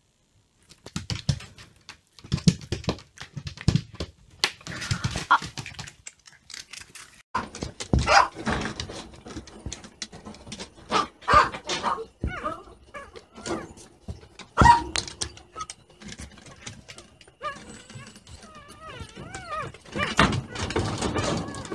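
Rustling and knocking for the first several seconds. Then a litter of young puppies whimpering and squealing in short, high cries that wobble in pitch, with sharp knocks among them.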